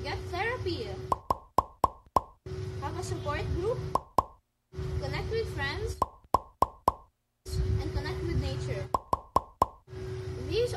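A boy's voice speaking, with a steady hum beneath it, while the audio keeps breaking up: three muffled stretches full of sharp clicks, and two brief dropouts to silence around the middle, the signs of a glitching audio stream.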